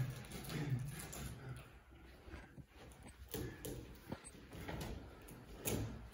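Scattered light thuds and scuffs of two people grappling on a carpeted floor: feet shuffling and bodies bumping, with a few sharper knocks.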